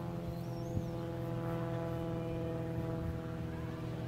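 A steady mechanical drone made of several fixed, unchanging tones, like a machine or engine running.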